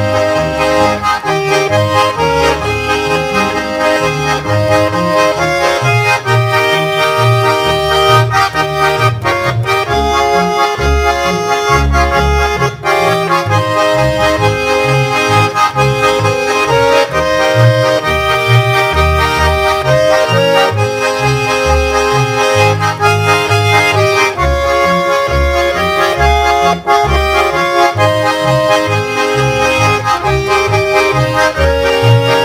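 Two Schwyzerörgeli (Swiss diatonic button accordions) playing a Ländler tune together, with a double bass underneath playing the bass line.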